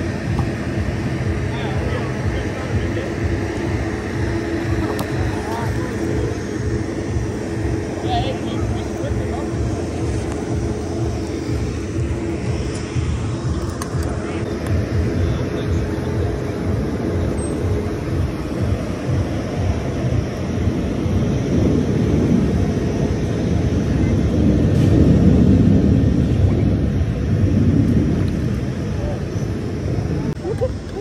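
Foam party foam cannon running, a steady droning hum with people's voices in the background; a louder rushing noise takes over for the last several seconds.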